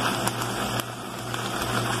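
Pot of pasta in sauce simmering on a lit gas burner, a steady low sizzling hiss with a low hum underneath and a few faint ticks.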